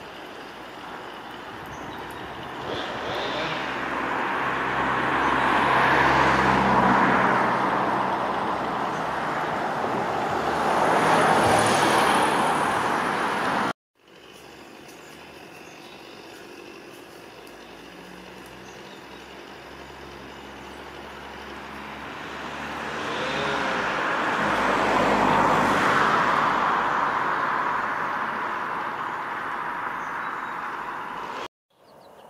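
Passing road traffic: a motor vehicle is heard swelling and fading as it goes by. The sound cuts off suddenly about halfway through, then another vehicle builds up and fades away.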